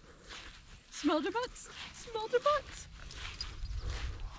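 Sheep bleating: a wavering call about a second in and a shorter one about two seconds in.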